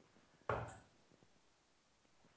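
A steel-tip dart striking a bristle dartboard once, a sharp thud about half a second in.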